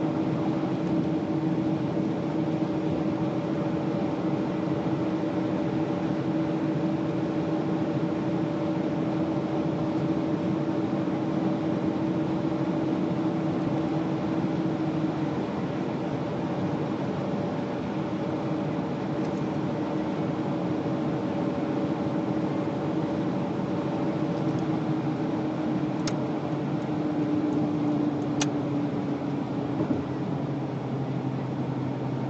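Jaguar car engine and road noise while cruising at a steady speed, a continuous drone with a held engine note that dips slightly in pitch near the end. Two brief clicks near the end.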